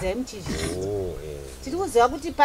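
A low, drawn-out voice-like call about a second long, its pitch rising and then falling, with speech on either side.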